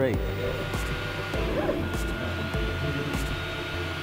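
MakerBot 3D printer at work: its stepper motors whir in short, changing tones as the print head moves, over a steady fan-like hiss and a thin high whine.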